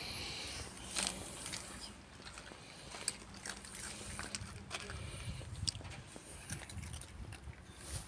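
A cat eating dry kibble off concrete: scattered faint crunches and clicks as it chews, with a low rumble in the last few seconds.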